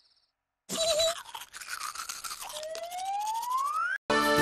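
Cartoon sound effects: after a short silence, a scratchy tooth-brushing scrub, then a whistle that rises steadily in pitch for about a second and a half.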